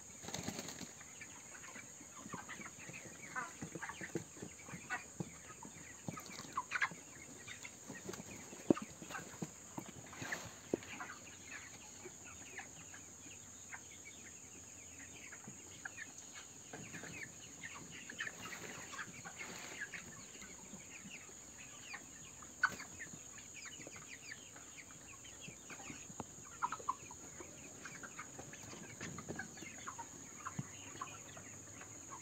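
A flock of white broiler chickens making short, scattered clucks and calls, with a few sharp clicks, over a steady high hiss.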